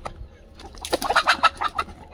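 A chicken clucking: a quick, loud run of calls about a second in, lasting about a second.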